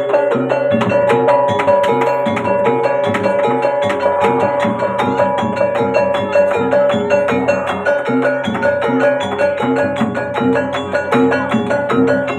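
Javanese gamelan accompaniment for a jathilan horse dance: gong-chimes and metallophones struck in a fast, steady, repeating pattern over a hand drum.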